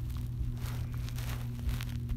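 A steady low electrical hum with a few faint rustles and clicks.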